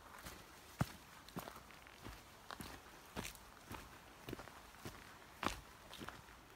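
Faint footsteps of a hiker walking up a forest trail of dirt, rocks and fallen leaves, a little under two steps a second at an uneven pace.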